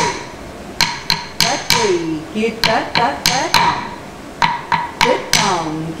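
Bharatanatyam beating stick (tattukazhi) struck on a wooden block (thattu palagai) in a steady rhythm of sharp, briefly ringing strikes, about three a second, keeping time in tishra gati for the dancer's Alarippu. A woman's voice chants rhythm syllables between the strikes.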